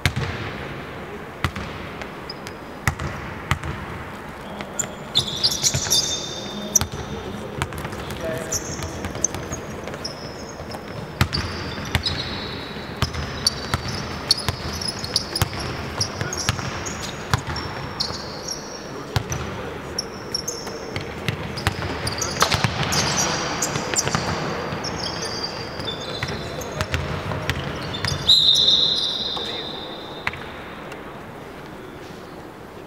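A basketball bouncing on a hardwood gym floor during play, with repeated short dribble knocks, high sneaker squeaks from players cutting on the court, and players' voices calling out. The loudest squeak comes near the end.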